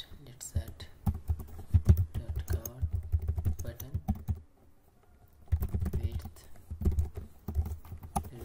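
Computer keyboard typing in quick runs of keystrokes, with a pause of about a second just past the middle before the typing resumes.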